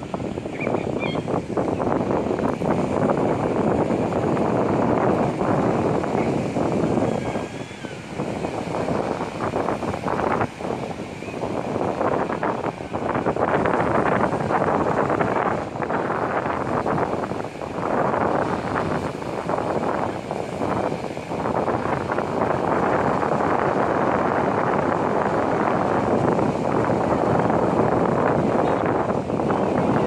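Wind buffeting the microphone: a loud, continuous rushing noise that swells and dips irregularly, over the wash of breaking ocean surf.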